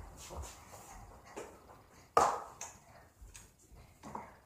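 A sudden sharp knock about two seconds in, among a few quieter clicks and handling sounds.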